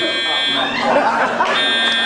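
An alarm buzzer sounds in steady pulses about a second long with about a second's gap between them, over people's voices.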